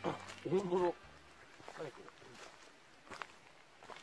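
A short spoken call in the first second, then faint footsteps on a gravel and leaf-litter road.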